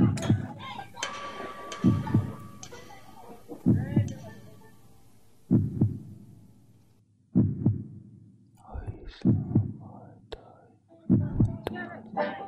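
Slow heartbeat: a pair of low thumps, lub-dub, repeating about every two seconds.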